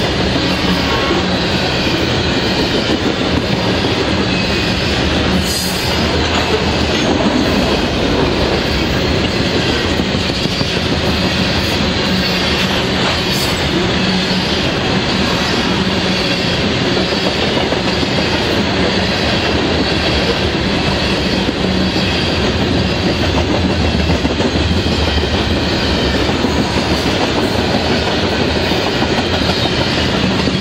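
Covered hopper cars of a freight train rolling steadily past at close range, steel wheels running and clicking over the rail joints. Two brief sharp high-pitched sounds stand out, about five and thirteen seconds in.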